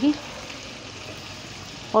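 Potatoes and cauliflower frying in oil in a wok, a steady sizzle.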